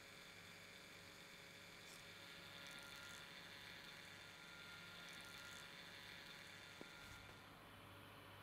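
Near silence: faint steady hum of room tone.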